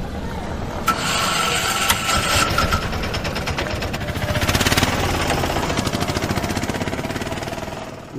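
A small motor runs steadily, with a thin steady whine for a couple of seconds near the start and a fast, even pulsing in the second half.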